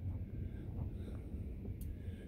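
Low rumble of wind buffeting the van and microphone, with a dog's faint panting over it.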